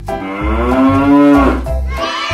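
A cow mooing once, one long call of about a second and a half that rises a little in pitch and then falls, over a music track with a steady beat.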